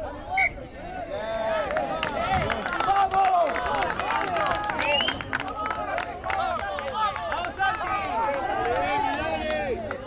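Many voices shouting and calling at once on a rugby pitch, players and touchline spectators overlapping so that no single words stand out. The shouting builds about a second in and carries on thickly to the end.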